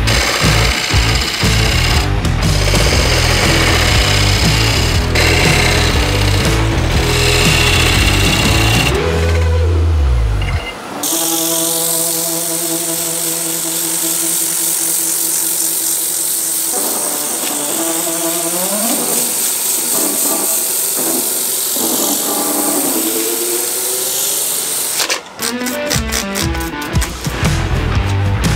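Rock background music with guitar for the first ten seconds. From about 11 s until shortly before the end, a steady hiss over a steady hum: power sanding of a birch platter spinning on a wood lathe.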